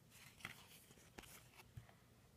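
Faint rustle and a few soft clicks of trading cards being handled and slid against each other, about half a second in and again just over a second in.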